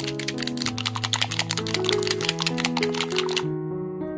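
A whisk beating egg with tomato paste in a glass bowl: a rapid run of clicks and taps against the glass that stops abruptly about three and a half seconds in. Background piano music plays throughout.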